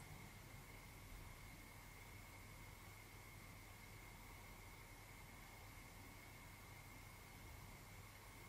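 Near silence: room tone, a faint steady hiss with a thin, steady high tone and a low hum underneath.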